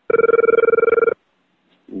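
A single electronic telephone ring tone, a fast trilling beep that lasts about a second and cuts off.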